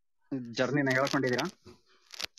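Speech: a person talks for about a second, followed by faint clicks.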